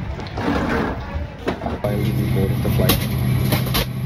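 Indistinct voices and bustle in an airport jet bridge. After a cut about two seconds in, the steady hum and hiss of an airliner cabin, with a few sharp clicks.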